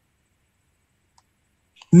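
Near silence, broken once by a faint click about a second in.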